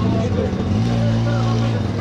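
Busy street market: a steady low engine hum from a motor vehicle running close by, under the chatter of the crowd.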